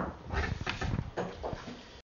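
Irregular low rustling and handling noises with a few soft knocks, with no speech.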